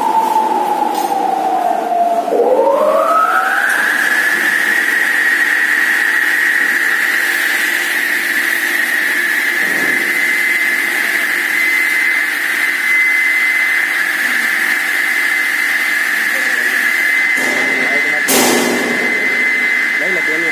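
Block cutter with a 2 HP three-phase electric motor belt-driving a 24-inch diamond blade, running free with no cut: a whine that falls in pitch for about two seconds, then rises quickly to a steady high whine that holds. A short knock sounds near the end.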